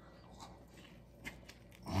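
Faint mouth sounds of a man biting into and chewing a large burrito, with a few soft wet clicks.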